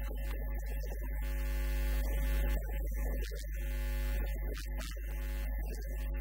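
Steady electrical mains hum: a strong low drone with fainter higher overtones, at a fairly constant level.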